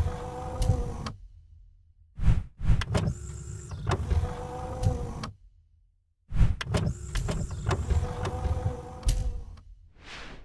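Animated-logo sound effect: a machine-like mechanical whir, heard three times with short gaps between. Each one opens with sharp clicks and lasts about three seconds.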